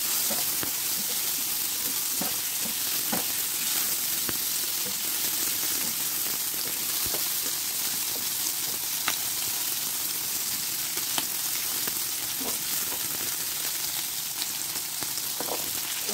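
Onion, bell peppers and carrot sizzling in hot oil in a frying pan, a steady hiss, as they are stir-fried with a spatula that clicks against the pan now and then.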